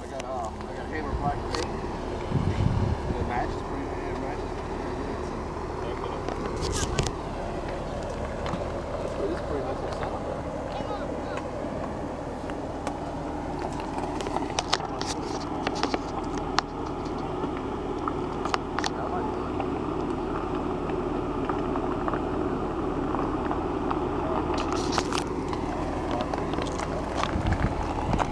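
Jeep Wrangler engine running low and steady as the Jeep crawls slowly over rock, with scattered clicks and crunches from the tyres and stones. Faint voices in the background.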